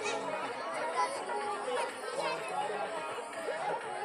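Many voices chattering over one another, with music playing at the same time.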